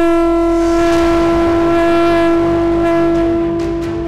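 One long held horn-like note, rich in overtones, over a low drone, easing slightly near the end.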